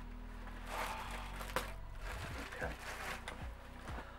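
Soft rustling as a costume top and its plastic wrapping are handled, with one sharp click about one and a half seconds in.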